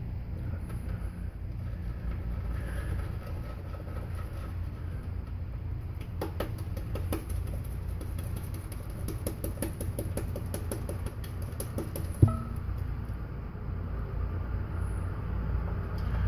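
Shaving brush whipping soap lather in a bowl: a soft wet churning that turns into a run of quick, even squishing strokes through the middle, with one sharp knock against the bowl about 12 seconds in. A steady low hum runs underneath.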